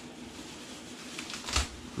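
Clear plastic bag crinkling as a bunch of fresh parsley is pulled out of it, with a few sharp crackles, the loudest about a second and a half in.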